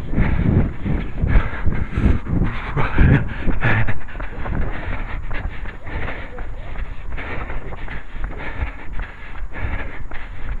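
A runner's own footsteps striking a tarmac path at a steady stride, with hard breathing close to a head-mounted microphone and wind rumbling on it, strongest in the first few seconds.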